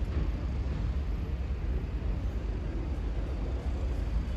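Steady low outdoor background rumble of distant traffic, with no distinct event standing out.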